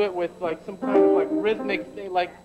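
Upright double bass plucked pizzicato, a few short notes, with a man speaking at the same time.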